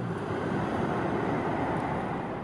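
A steady low rushing rumble of noise, an ambient sound-design layer in the film's soundtrack, without any clear tone or rhythm.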